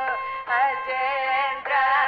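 Carnatic vocal music in raga Janjhuti: a voice sings long ornamented phrases, its pitch wavering in fast oscillating gamakas, over a steady drone. The phrase breaks briefly about half a second in and again near the end.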